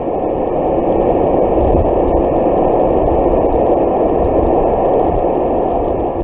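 Ocean surf breaking on a beach: a loud, steady rushing noise with a deep low rumble, swelling up over the first second.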